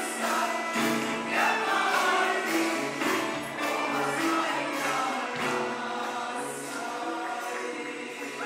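Mixed choir singing Turkish art music with an instrumental ensemble, holding long notes through the closing bars of the piece.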